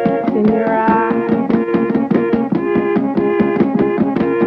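Lo-fi home-recorded song: a keyboard plays a repeating chord pattern in a steady rhythm, with a sung note trailing off in the first second.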